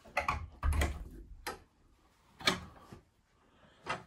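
Metal latch on an old wooden interior door being worked open by hand: a cluster of clicks, then a heavier low thump about a second in. A few single knocks follow as the door is opened.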